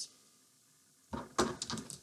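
Hands handling a metallic yarn tassel and scissors: about a second in, a quick run of sharp rustles and clicks after a quiet pause.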